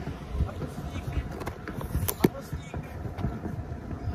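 Scooter rolling over pavement, giving a steady low rolling noise from the wheels and road vibration, with two sharp knocks a fraction of a second apart about two seconds in.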